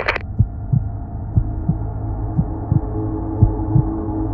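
Heartbeat sound effect, a double thump about once a second, over a steady low drone.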